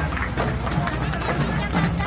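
Street parade sound: music mixed with crowd voices and chatter.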